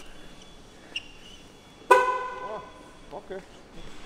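A single short horn toot about two seconds in: a sharp start, then a pitched tone with several overtones that fades out within about a second, with faint voices in the background.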